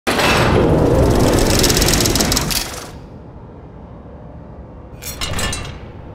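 Designed sound effects for a sports title graphic. A loud, grinding metallic rush lasts nearly three seconds and stops abruptly, leaving a low rumble. About five seconds in comes a short run of rapid metallic clicks.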